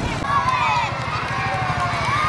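Children's voices shouting and calling out, several overlapping, over the steady low running of a motorbike engine.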